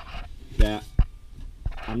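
A man's voice in a short hesitation sound, with a few sharp knocks in between from handling close to the microphone.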